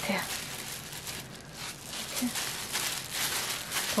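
Disposable plastic gloves and plastic wrap crinkling and rustling as gloved hands tear off and shape pieces of sticky rice-cake dough.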